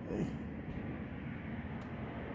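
A short spoken "okay", then a steady low background rumble with no distinct events.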